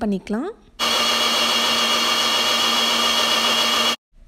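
NutriBullet personal blender running at full speed, blending a milkshake: a loud, steady motor whine over a hiss of churning liquid. It starts about a second in and cuts off suddenly near the end.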